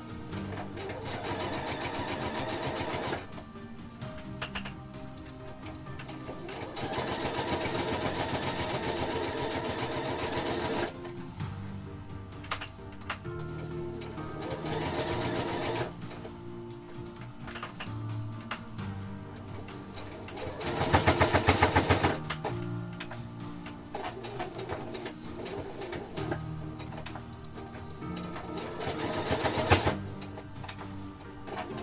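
Electric sewing machine stitching in several runs of a few seconds each, with pauses between as the fabric is guided; the loudest run comes about two-thirds of the way in.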